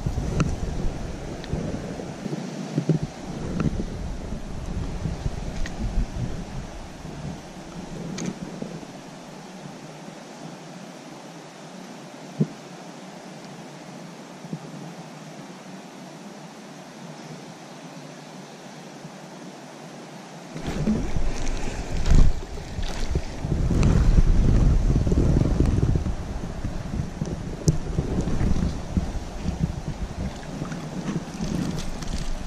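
Wind buffeting an outdoor microphone over a steady hiss, growing into heavier rumbling about two-thirds of the way through.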